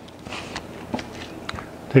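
A few soft rustles and light taps from a wax-paper-backed silver leaf transfer sheet being laid over the wood and pressed down by hand.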